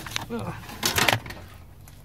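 Handling noise from wires being fed through under a dashboard: a click, then rustling and scraping near the middle. A short sound from a man's voice comes early in it.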